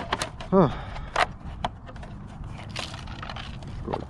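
Scattered sharp knocks and scrapes, about half a dozen spread over the few seconds.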